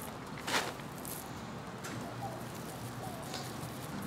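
Dry sand sifted through a small hand-held mesh sieve onto a seed tray: a quiet, even rustle of falling grains, with one short sharper sound about half a second in.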